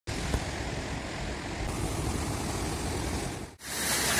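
A steady, low rush of ocean surf breaking on the beach. Near the end it cuts out briefly, and then the louder hiss of a small waterfall splashing onto sand begins.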